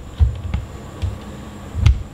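Handling noise: three dull low thumps, the last with a sharp click just before the end, over a faint steady hum.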